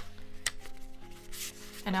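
Paper pages of a passport-size notebook insert being turned by hand, a short tick and then a light rustle, over soft background music.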